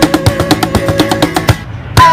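Cajon slapped in a fast fill of rapid strikes, about ten a second, over held acoustic guitar and bass notes. It cuts off about a second and a half in for a short break, just before the full band and voices come back in loudly at the end.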